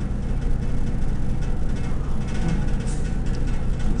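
A steady low hum with a faint noisy haze over it, unchanging throughout.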